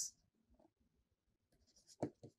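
Near silence in a small room, with faint strokes of a stylus writing on a tablet.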